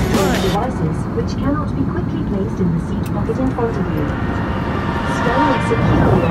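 Indistinct voices over a steady low rumble of noise.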